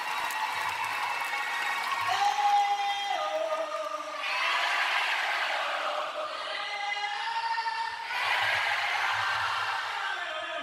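Live concert crowd singing and cheering in response to a male lead singer's held vocal phrases, the singer's notes and the crowd's answering roar alternating a couple of times in a large hall.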